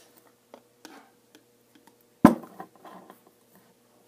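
Light clicks and taps of a tin can being worked at to open it, with one sharp metallic knock a little past halfway.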